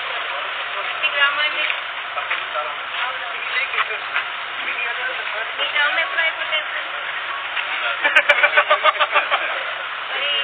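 People in a group talking in short snatches, with the loudest talk about eight seconds in, over a steady background hiss.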